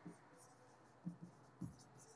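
Faint marker strokes on a whiteboard: a few short, quiet scratches of writing over near silence.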